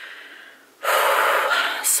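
A woman's quiet intake of breath followed by a loud, long exhale lasting about a second: a weary sigh of someone worn out and bracing herself to get up and go.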